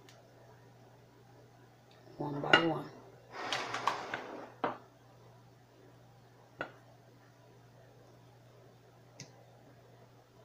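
Quiet kitchen room tone with a steady low hum; a voice is heard briefly from about two seconds in, then three light clicks of dishware, a couple of seconds apart, as chicken pieces are handled between a plate and a bowl of flour.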